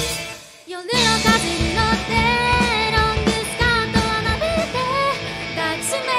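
Live rock band: a female lead singer over electric guitars and a drum kit. The band drops out for a moment just after the start, then comes back in with the vocals about a second in.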